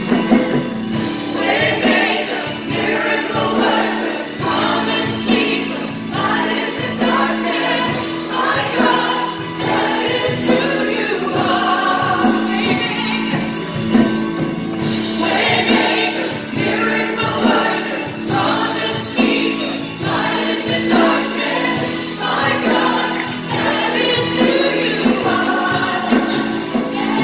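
Live contemporary worship music: a female lead singer and backing vocalists singing with band accompaniment over sustained chords.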